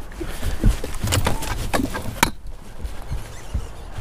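Knocks and clatter of fishing gear and footsteps on a bass boat's deck as a rod is set down and the landing net is grabbed: a run of sharp knocks and clicks, the heaviest thump about two-thirds of a second in and a last sharp click just past two seconds.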